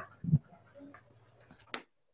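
Hand-held eraser wiping a whiteboard: a short low thump about a third of a second in, then a brief sharp scrape near the end.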